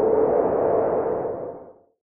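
An added sound effect: a noisy, hollow swell with a faint steady note at its core. It holds for about a second, then fades away and ends shortly before the end.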